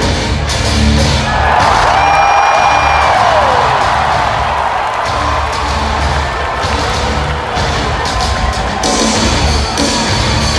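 Loud music over an arena's sound system with a pulsing low beat, and a crowd cheering and whooping over it; the cheering swells about a second and a half in and eases off after a few seconds.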